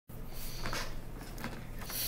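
A low steady hum with a few faint clicks and rustles scattered through it.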